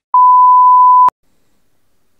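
Censor bleep: a single loud, steady 1 kHz beep tone lasting about a second, covering a swear word, that cuts off abruptly with a click.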